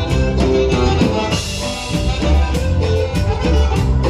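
Mexican dance music with a steady beat and a pulsing bass line, playing loudly. There is a short hiss about a second and a half in.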